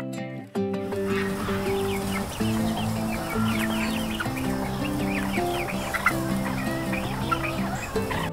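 A flock of chickens clucking and calling in their pen, starting about half a second in, with steady background music under it.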